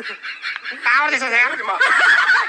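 A high-pitched, wavering voice in short bursts, laughter or a squeaky novelty vocal effect.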